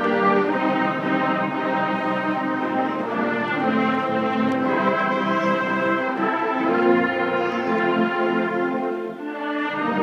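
Middle-school concert band playing sustained chords, with brass to the fore. The sound drops briefly about nine seconds in, then the full chord comes back.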